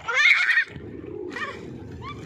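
A toddler's high, excited squeal at the start, with a shorter second squeal about a second and a half in, over a steady low rumble.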